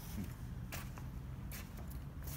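Soft footsteps on wooden decking, a few short steps, over a low steady rumble.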